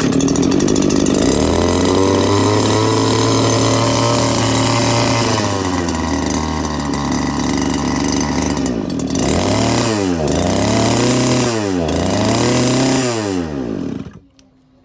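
Small Robin petrol engine on a portable water pump, running steadily just after being pull-started. Near the end it is revved up and back down three times, then cut off sharply.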